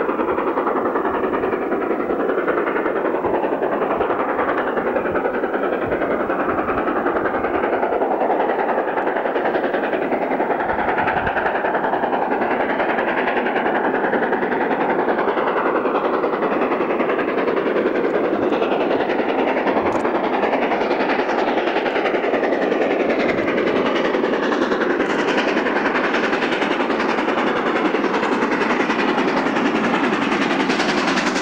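LMS Princess Royal class four-cylinder 4-6-2 steam locomotive 46203 Princess Margaret Rose working hard with a train, heard as a steady, even rush of exhaust and running noise.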